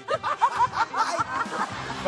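A man laughing in a quick run of short bursts, fading out after about a second, over background music.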